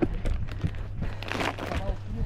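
Footsteps and camera handling knocks as someone walks from the deck into the boat's cabin, over a steady low rumble, with a short breathy rustle about halfway.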